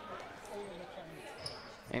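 Quiet gymnasium ambience with the faint voices of players on the court and a short high squeak about one and a half seconds in.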